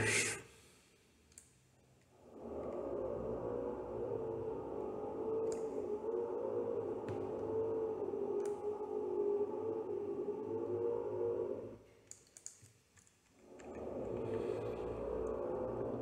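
A man humming softly with his mouth closed, one long held phrase with a slightly wavering pitch, a short break, then humming again near the end. A few faint mouse or keyboard clicks come in between.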